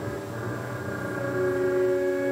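Music heard through an AM radio broadcast: several steady tones held together as a chord. A new set of tones comes in about a second and a half in.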